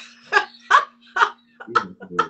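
A woman laughing in a run of about five short, rhythmic bursts over a faint steady hum.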